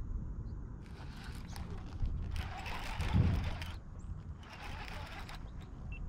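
Baitcasting reel being cranked to bring in a hooked bass, the reel's gears whirring in three spells of about a second each.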